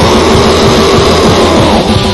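Black metal song played loud: a dense wall of distorted guitars over fast, driving drums.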